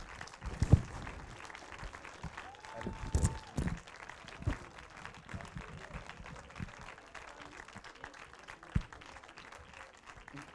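Audience applauding, a dense even patter of clapping with a few louder thumps and a brief held call about three seconds in.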